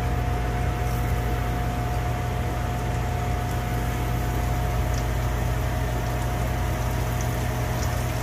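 Battered chicken strips frying in very hot olive oil in a pan, a steady hiss of bubbling oil. Under it runs the constant hum and buzz of the RV stove's fan.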